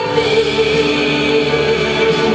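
A woman and a man singing a musical-theatre duet together, holding a long, steady note.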